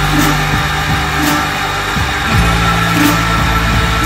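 Instrumental passage of a space-rock song: dense, loud, sustained droning guitar and bass notes, with drum hits every second or so and the low notes shifting and sliding about halfway through.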